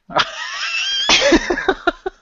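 Laughter after a joke: a high, squealing laugh that rises in pitch, then a quick run of short 'ha-ha' bursts that fade out near the end.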